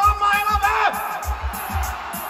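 A man's voice through the concert PA holding out the last word of a shouted question, over a backing beat of kick drum and hi-hat; about a second in the voice stops and the crowd's cheering comes up.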